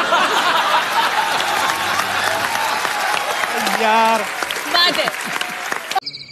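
Studio audience applauding and laughing after a joke, a steady dense clatter of clapping, with a voice briefly rising above it about four seconds in.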